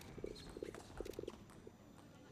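Table tennis rally: the celluloid-type ball clicking sharply off the rackets and table, with the players' quick footwork patting on the court floor in short flurries.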